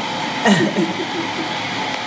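A steady rushing noise like a blower or fan running, with a person's voice briefly about half a second in.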